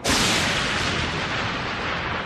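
A thunderclap sound effect: a sudden loud crack that rumbles on and slowly fades.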